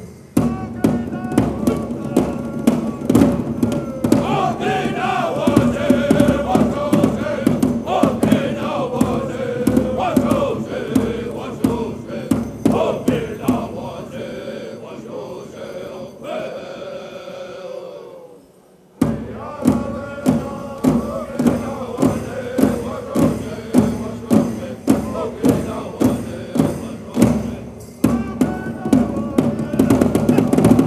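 Pow wow drum group singing in unison over a large drum struck with a steady beat, about one and a half beats a second. The song fades about fifteen seconds in, dips almost out near eighteen seconds, then starts again abruptly with the drum.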